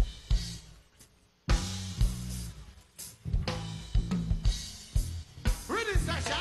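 Live reggae band with drum kit and bass guitar: a few hard drum and bass hits, a short break that drops almost to silence about a second in, then the full band comes back in with a steady groove.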